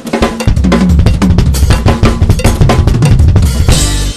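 Acoustic drum kit played fast: dense, rapid strokes on snare, toms and bass drum.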